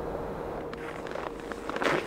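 A quiet lull in a film soundtrack: a faint held tone over soft outdoor ambience, with a few light ticks and a brief rushing noise just before the end.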